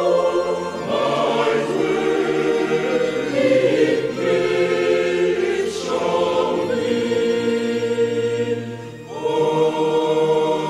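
Church choir singing in slow, sustained chords that change every second or two, with a brief drop in level near the end before a new chord begins.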